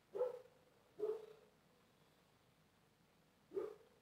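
A dog barking: three short barks, two about a second apart at the start and a third near the end.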